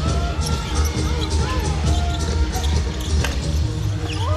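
A basketball bouncing on a hardwood court with short knocks, heard over background music with a heavy, steady bass.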